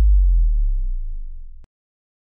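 A deep synthesizer bass note left ringing at the end of an electronic music track, sliding slowly down in pitch and fading, then cutting off abruptly near the end.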